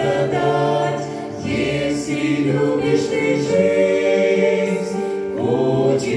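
Small mixed choir of men and women singing a Russian-language Christian hymn in harmony, holding long chords that change about a second and a half in and again near the end.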